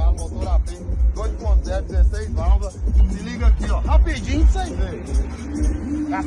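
A man talking in Portuguese over background music with a heavy, pulsing bass beat.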